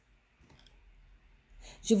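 A pause in spoken prayer: near silence with a few faint clicks, then the voice starts the next line just before the end.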